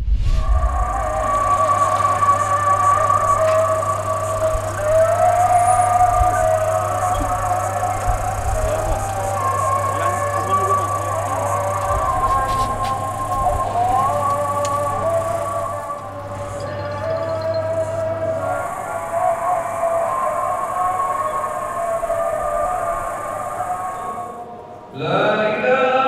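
Music of sustained, slowly gliding melodic tones over a steady low hum. Near the end it gives way to a group of voices chanting.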